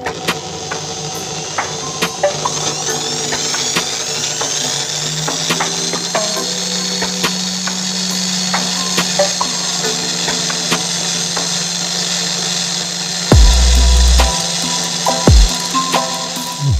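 Corded electric drill, rigged as a bench buffer with a felt polishing wheel, spins up over the first few seconds and then runs at a steady whine. Electronic background music plays over it, with heavy bass hits near the end that are the loudest sounds.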